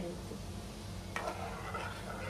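A steel ladle stirs broken wheat into simmering water in an aluminium pot. About a second in the ladle knocks on the pot, and stirring and swishing follow. A steady low hum sits underneath.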